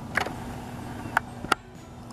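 Three sharp clicks, the last two about a third of a second apart, over a steady low hum and background hiss.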